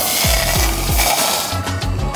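Water pouring from a canteen into a small metal camping pot on a Soto camp stove, a dense hiss that fades after about a second and a half, over background music with a steady beat.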